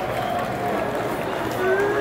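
Large arena crowd cheering and clapping, with single held shouts standing out over the steady noise of thousands of voices.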